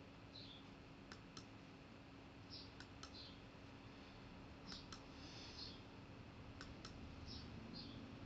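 Faint computer mouse-button clicks: four quick double clicks, each a press and release, about two seconds apart, advancing the animations of a slide presentation. A low steady hum runs underneath.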